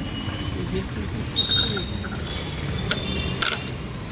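A car's screw-on fuel cap is turned back onto the filler neck and the fuel flap is pushed shut, giving a few short plastic clicks. Underneath runs a steady low rumble of engines with voices in the background.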